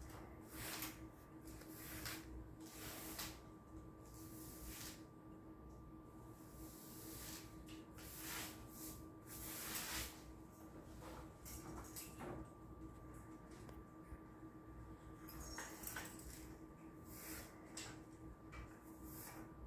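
Faint, irregular swishes of a paint applicator on an extension pole being drawn along the wall where it meets the ceiling, cutting in, over a steady faint hum.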